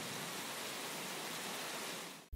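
Handheld shower head spraying water: a steady hiss of running spray.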